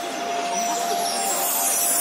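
Show soundtrack over the theatre's loudspeakers: a single held note under a rushing swell of noise that brightens through the second half.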